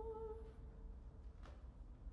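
Solo soprano holding the last note of the word "poor" with no accompaniment; the note fades out within the first second. Then quiet, with one faint click about one and a half seconds in.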